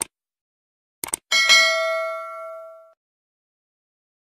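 Subscribe-button animation sound effects: a mouse click, then a quick double click about a second in, followed by a bright bell ding that rings out and fades over about a second and a half.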